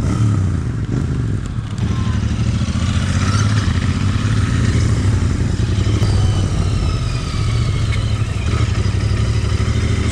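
Royal Enfield 650 parallel-twin engine running steadily as the motorcycle rides at low speed, heard from the rider's seat.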